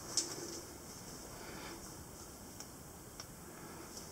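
A few faint, isolated clicks over quiet room tone in a rock passage, the clearest just after the start.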